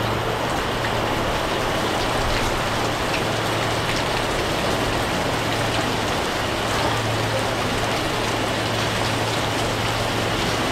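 Steady rain falling, an even hiss, with a low steady hum underneath.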